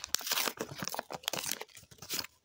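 Plastic trading-card pack wrapper crinkling and tearing as it is pulled open by hand: a quick, irregular run of crackles that thins out near the end.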